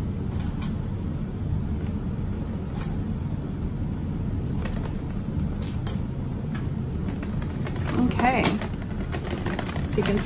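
Light clicks and clinks of plastic sewing clips and the bag's metal hardware as the bag is handled and clipped together, over a steady low hum. A brief murmur of a voice comes near the end.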